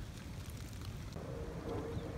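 Steady hiss of rain falling on a paved path and wet woodland, with a faint steady hum joining about a second in.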